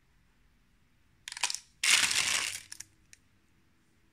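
A page of a stamp stock book being turned: a short rustle, then a louder, longer papery swish about two seconds in that lasts most of a second, followed by a faint click.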